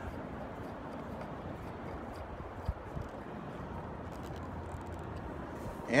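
Steady low background noise with two faint small clicks about three seconds in, as a Phillips screwdriver drives the screw into the plastic adjuster handle of a car's side mirror.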